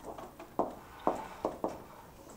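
A stylus tapping and clicking on a tablet screen while writing: about six short, light taps at uneven intervals.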